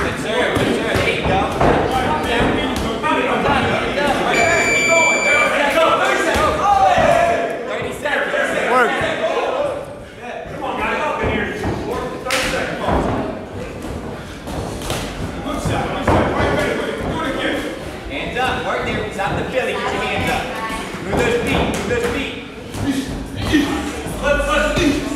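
Boxing gloves landing in a sparring exchange, a run of short thuds and slaps on gloves, headgear and body, with voices calling out in a large echoing room. A short steady beep sounds about four and a half seconds in.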